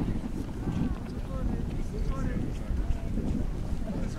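Wind blowing on the microphone, a steady low rumble, with several people's voices talking at a distance over it.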